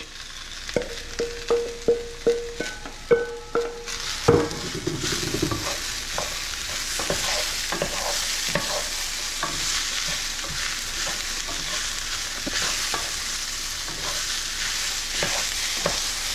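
A few sharp knocks and clinks with short ringing notes as chopped vegetables go into a hot skillet, then, after a louder knock about four seconds in, a steady sizzle of the vegetables frying, with the scrape and click of a utensil stirring them.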